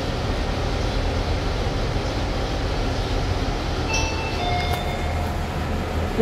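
Lift car in motion, a steady low hum with airy rushing noise. About four seconds in, a two-note electronic chime sounds, the lift's arrival signal at the floor.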